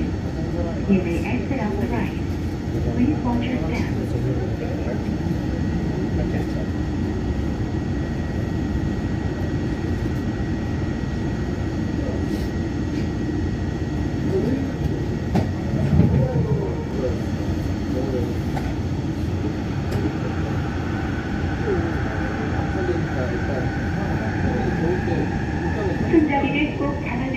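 Yongin EverLine driverless light-metro train (Bombardier Innovia ART 200, linear-induction drive on steel rails), a steady running rumble and rattle heard inside the car as it runs through a station stretch. A faint steady high tone runs through the first half, and over the last several seconds a whine rises in pitch as the train pulls away and speeds up.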